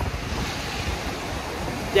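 Wind rumbling on a handheld phone's microphone outdoors, a steady noise with no pauses.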